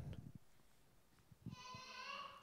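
Near silence, then about one and a half seconds in a child's faint, high voice calls out an answer from the congregation.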